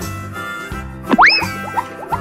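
Bright children's background music with a cartoon 'boing' sound effect about a second in: one quick upward pitch sweep that then sags slowly, followed by a few short plucked notes.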